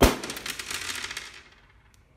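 A blue latex balloon bursting with a single sharp pop as a pin pierces it, followed by about a second and a half of crackling that fades away.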